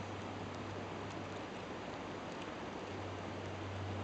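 Light rain falling on a river surface: a steady, even hiss with a low, constant hum beneath it.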